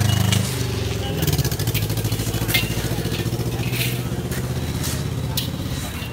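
A vehicle engine running steadily with a fast pulsing beat, louder for the first half second, with a few short scrapes of shovels in loose gravel.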